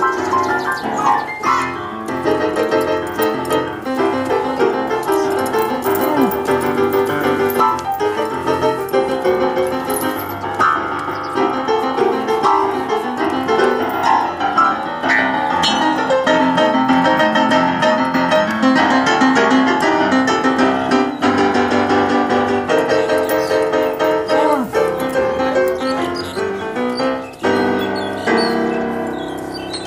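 Piano playing a 12-bar blues, with an elephant pressing notes on the keys with its trunk alongside the pianist's two hands.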